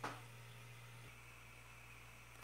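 Near silence: room tone with a steady low hum and faint hiss, after a brief click at the very start.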